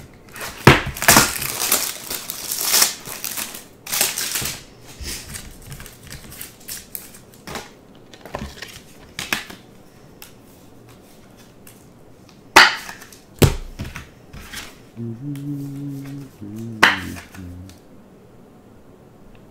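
Plastic wrapping on a pack of BCW toploaders being torn open and crinkled for the first few seconds. Then come lighter plastic clicks and rustles as cards are slid into the rigid toploaders, with a couple of sharp clicks a little past the middle.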